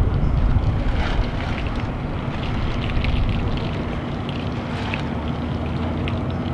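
Wind buffeting an outdoor microphone: an uneven low rumble, with a steady low hum joining in about two seconds in.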